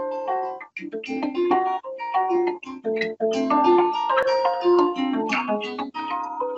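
Acoustic guitar fingerpicked in a quick, flowing run of ringing notes that uses artificial harmonics among the plain notes.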